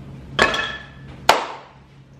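A wooden spoon knocking against a metal mixing bowl twice, about a second apart; the first knock leaves the bowl ringing briefly.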